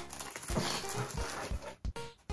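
Background music with a steady beat of soft low thumps under held tones.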